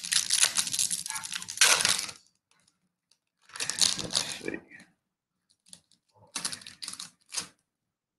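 Foil trading-card pack wrapper and glossy chrome cards handled in gloved hands: crinkling and clicking in three spells of a second or two each, with short quiet gaps between.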